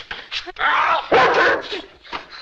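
Two rough, bark-like calls, each about half a second long, the second starting about a second in.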